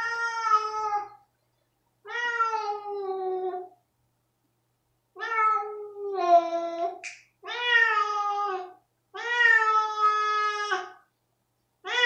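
Domestic tabby-and-white cat yowling in protest as a spot-on flea treatment is applied to the back of its neck: five long, drawn-out howls, each lasting a second or more, with short pauses between.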